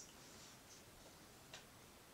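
Near silence: room tone, with one faint tick about one and a half seconds in.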